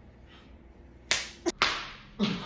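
A banana peel slapped against a man's face: a sharp smack about a second in, then another about half a second later.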